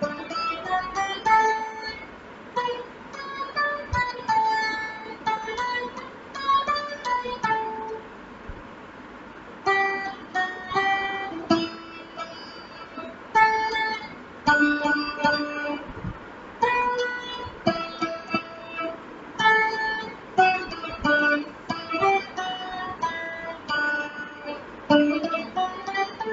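Stratocaster-style electric guitar picking out a slow single-note melody in phrases, with short pauses between them.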